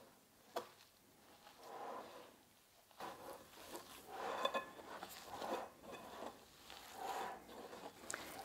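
Hands kneading a mass of grated and riced potatoes in a glass bowl: faint, irregular squishing and rustling, with a single soft click about half a second in.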